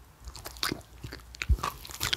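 A Shetland sheepdog biting and chewing pan-fried jeon, close to the microphone: scattered crunches and wet smacks, the heaviest bite about one and a half seconds in.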